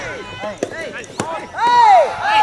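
Soft tennis rally: a couple of sharp racket hits on the rubber ball, with players' shouted calls throughout. The loudest call is a long shout near the end.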